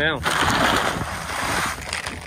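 Range cubes pouring out of a paper feed bag onto dry ground: a rattling rush of pellets and bag for about a second and a half, tailing off near the end.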